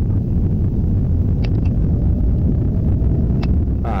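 Steady low rumble of a car driving, heard inside the cabin, with a faint click about a second and a half in and another near the end.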